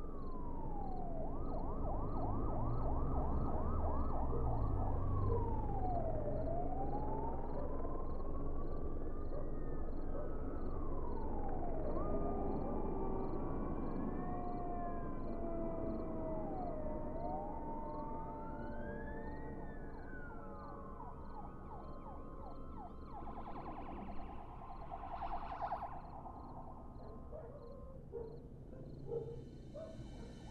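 Several emergency-vehicle sirens wailing at once, their pitches rising and falling slowly and crossing over each other, with stretches of rapid yelp warble in the first few seconds and again about three-quarters of the way through. A low rumble sits underneath during the first several seconds.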